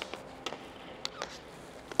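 Quiet background with a few faint, sharp taps spread over two seconds.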